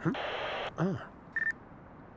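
Handheld two-way radio hissing with static, then a single short high beep about one and a half seconds in.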